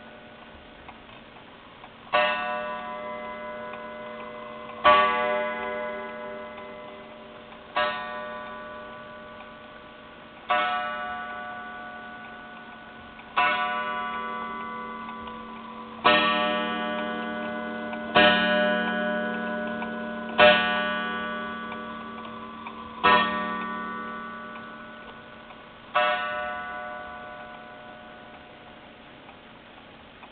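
Junghans miniature regulator wall clock striking the hour: ten slow strokes, about two to three seconds apart, each ringing out and fading slowly, with the movement ticking faintly between them.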